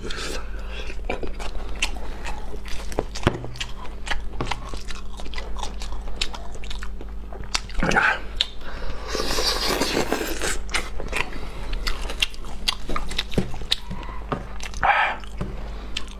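Close-miked chewing of braised pork knuckle: a steady run of small mouth clicks and smacks, with a longer hissing noise about nine seconds in.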